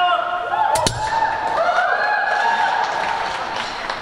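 A man's voice over an arena's public-address system, echoing, with a single sharp thud about a second in.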